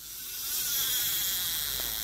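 Large spinning fishing reel cranked fast by hand, its rotor and gears giving a smooth, steady whir that builds over the first half second. There is no clicking: the reel's silent (mute) switch is on.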